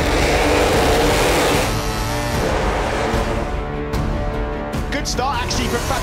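A pack of MotoGP racing motorcycles accelerating hard off the start grid, a dense engine noise at first that settles into several steady engine tones after about two seconds. A music bed runs underneath, and a commentator's voice comes in near the end.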